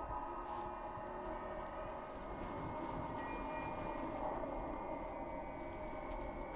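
Sustained ambient drone of a horror film score: layered held tones that do not change, with no beat or melody.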